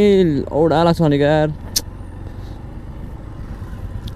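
A voice calls out in long, drawn-out, wavering notes for about a second and a half. After that the motorcycle's engine and wind noise carry on steadily at riding speed, with one sharp click just under two seconds in.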